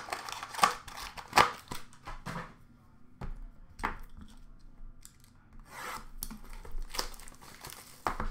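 Trading-card pack wrappers being torn open and handled, with the cards being pulled out. It comes as a series of sharp rips and crinkly rustles, the loudest about a second and a half, four and seven seconds in, with quieter stretches between.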